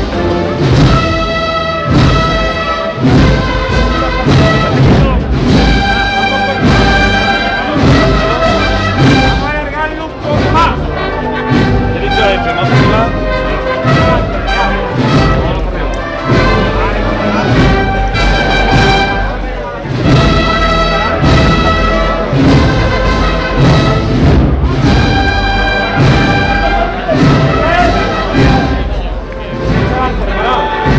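Marching band of brass and drums playing a processional march: sustained brass chords over a steady drum beat.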